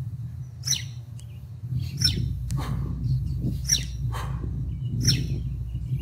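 Continuous kettlebell swings, each marked by a short, high, sharp sound that repeats evenly about once every second and a half, over a steady low hum.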